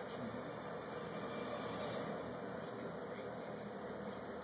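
Tibetan terrier pawing and digging at a blanket on carpet: soft fabric rustling and faint claw scratches over a steady background hiss.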